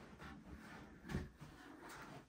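Faint scraping and rubbing of a cardboard box being lifted and slid up off its inner packaging, with one soft knock about a second in.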